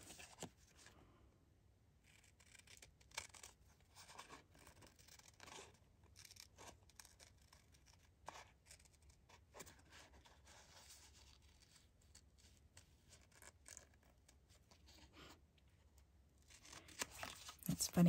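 Faint, irregular snips of small craft scissors fussy-cutting around a printed design in paper.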